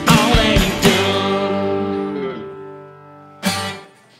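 A live band of drum kit, acoustic guitar and electric guitar playing the last bars of a boogie: drum hits up to about a second in, then a final chord ringing and fading away. A short loud final stab near the end cuts off sharply.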